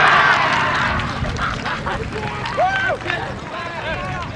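A burst of cheering and shouting for a penalty goal, loudest at first, then dying down into scattered shouts and calls.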